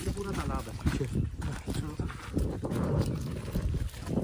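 A man's voice speaking a few indistinct words, over a low, uneven rumble from walking along a leaf-strewn dirt path with the camera in hand.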